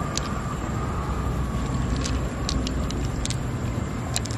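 Loose freshwater pearls clicking against one another as they are picked up and dropped into a palmful of pearls: a handful of light, separate clicks over a steady low rumble.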